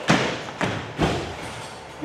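Feet stamping on a hard floor during a dance: three heavy thumps about half a second apart, each followed by an echo in a bare room.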